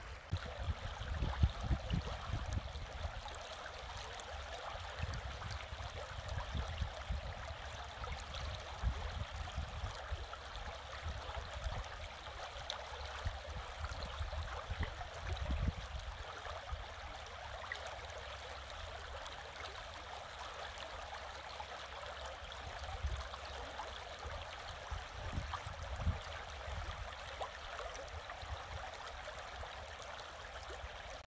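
Shallow creek flowing over a stony riffle: a steady rush of running water, with uneven low rumbling underneath.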